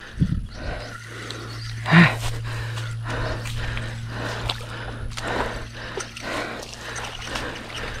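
Footsteps and rustling through grass and brush at a pond's edge, a run of irregular soft knocks and swishes, with a short breathy grunt about two seconds in. A steady low hum runs underneath.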